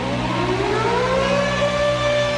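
Siren-like wail at the start of an electronic dubstep track: a tone glides up in pitch over about a second and a half and then holds, over a steady low drone.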